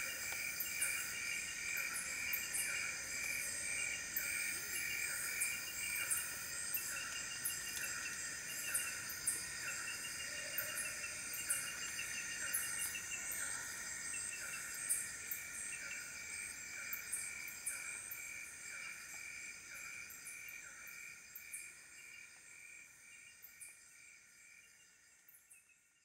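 Chorus of insects trilling in steady layered tones, with one chirp repeating about once a second and scattered sharp clicks. It fades out over the last several seconds.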